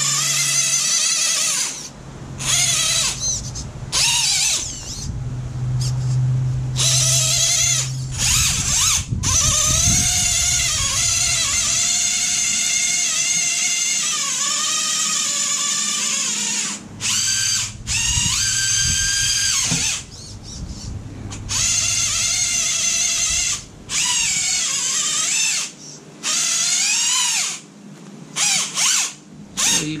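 Axial Capra 1.9 RC rock crawler's electric motor and geared drivetrain whining as it is driven. The pitch rises and falls with the throttle, and the whine stops and starts many times.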